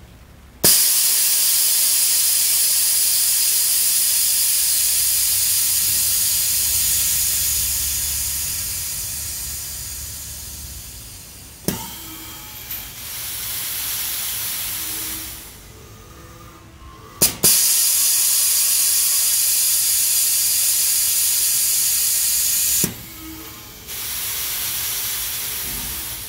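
Air control valve of a Hendrickson steerable lift axle switching with sharp clicks as power is applied and removed, each switch releasing a loud rush of compressed air through the lines and suspension air bags. It happens twice: a click and a long hiss that fades slowly, then a click and a softer hiss.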